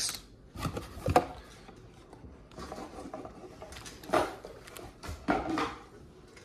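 Empty cardboard Elite Trainer Box parts being picked up and cleared off a playmat by hand: scattered soft knocks and rustles, the clearest about a second in and again around four and five seconds.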